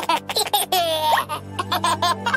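Cartoon baby voice laughing in quick repeated giggles, over a children's background music track.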